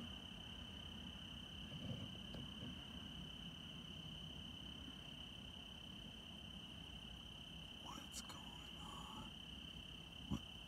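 Faint, steady high-pitched trilling of crickets, with a low rumble underneath. A few faint clicks come near the end.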